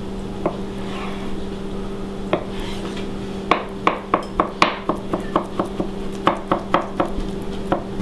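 Kitchen knife cutting a boiled parsnip on a plastic cutting board. A few single cuts come first, then from about halfway a quick run of taps, about four a second, all over a steady low hum.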